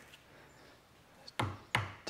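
Hammer tapping a black plastic apron support down onto fresh adhesive on an acrylic bathtub's apron: a few short taps in the second half, after a quiet start.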